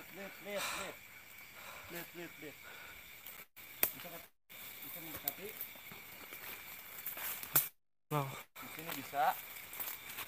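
Quiet, low voices murmuring over a steady hiss, with a few sharp clicks; twice the sound cuts out completely for a moment.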